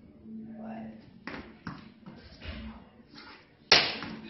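Footwork and strikes of a kung fu form: feet scuffing and slapping on a foam mat, a few quick smacks, and one sharp, loud smack near the end that is the loudest sound, all over a steady low hum.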